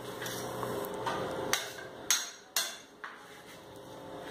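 Kitchen knife chopping on a wooden cutting board: a few sharp knocks, three of them louder and about half a second apart in the middle.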